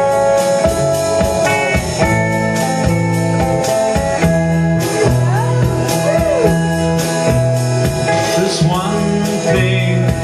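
Electric guitar played live, a song intro with a steady picked rhythm over held bass notes and some bent notes.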